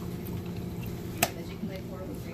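A black plastic fork clicking once against food in a foil takeout tray about a second in, over a steady low hum.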